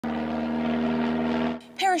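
Twin-engine propeller aircraft flying overhead, a steady drone that cuts off abruptly about one and a half seconds in. A woman's narrating voice starts just after.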